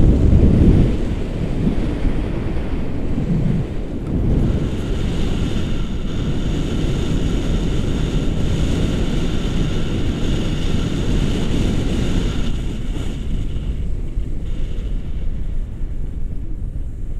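Wind from a paraglider's flight buffeting the action camera's microphone: a steady low rumble, heaviest in the first second. A faint, steady high tone runs through the middle stretch.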